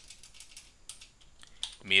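Computer keyboard keys clicking in a quick, irregular run as text is deleted in a code editor.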